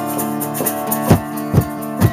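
Acoustic guitar strummed in steady chords, with strong strokes about twice a second, and a hand shaker rattling along with the rhythm.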